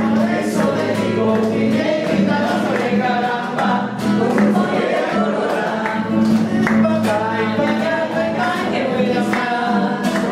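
Acoustic guitars strumming a steady accompaniment while a group of voices sings a song together.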